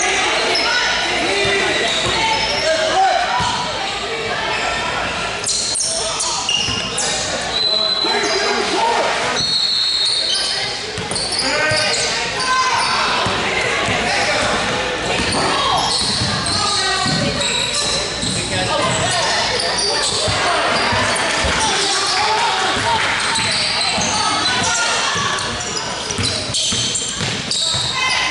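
Basketball game sounds in a gym: a basketball bouncing on the hardwood court under steady, indistinct shouting and chatter from players and spectators, with echo from the large hall.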